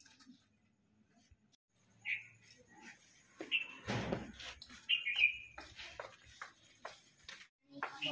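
Small birds chirping in short high calls, several times through the middle, with a run of light sharp taps and clicks toward the end.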